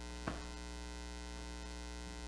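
Steady electrical mains hum with a stack of overtones, from the recording or sound system, with one faint short click about a quarter second in.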